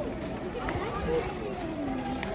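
Indistinct voices talking over a steady background noise, with no clear words.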